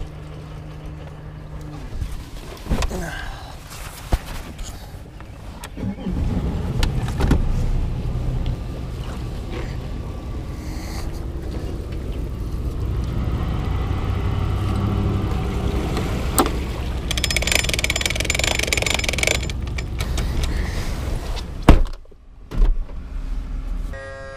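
An engine running with a low rumble, with a few sharp knocks and clattering handling noises over it.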